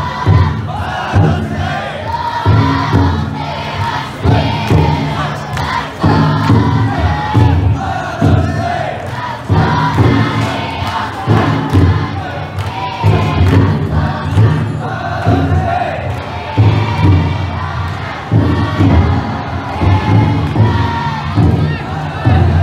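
Futon daiko festival float: the large drum inside is struck in a steady beat while the team of bearers chant and shout together in rhythm.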